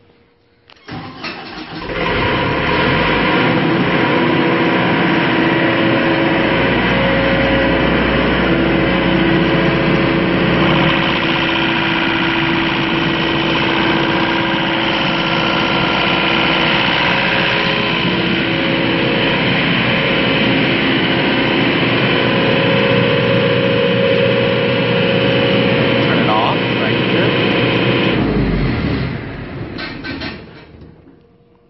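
John Deere diesel engine of a Baldor 25 kVA sound-attenuated generator set starting on its own about a second in after an automatic start delay, then running loudly and steadily; the sound dies away near the end.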